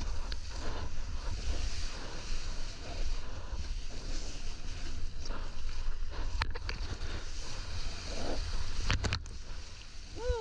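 Ocean whitewater rushing and splashing right around a surfboard-mounted GoPro, with a heavy low rumble of wind and water buffeting the microphone. A few sharp clicks sound in the second half.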